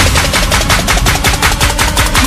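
Background music: a fast, even run of sharp percussive hits, about nine a second, like a drum roll building up in an electronic track.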